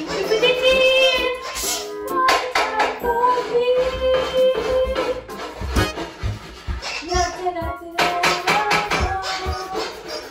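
A woman singing a musical-theatre song over a recorded backing track, holding long notes between shorter phrases.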